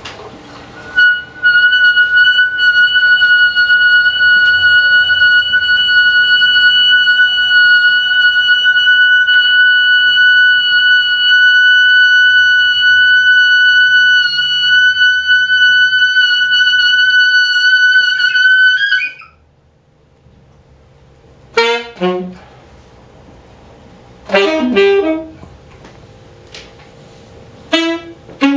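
Solo alto saxophone holding one long, high note for about eighteen seconds, which wavers and breaks off. After a short pause come brief flurries of fast notes.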